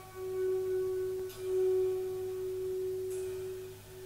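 A single guitar note ringing on and swelling in volume, a pure held tone, as a live band's first song begins.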